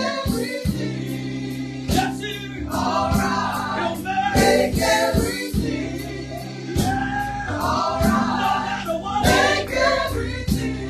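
A gospel vocal group singing together in chorus, several voices at once, led by a woman's voice, over a steady held low accompaniment.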